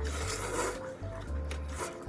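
Ramen noodles being slurped, a long noisy slurp in the first second, over light background music.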